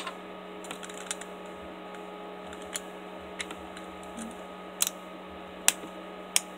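Small hard-plastic clicks and taps of a Beyblade Burst Gachi layer being assembled by hand, its parts snapping and pressing together, with a few sharper clicks near the start and end. A steady low hum runs underneath.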